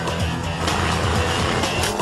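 Instrumental break in the anime's Latin American Spanish opening theme song, a band playing with a steady drum beat between sung lines.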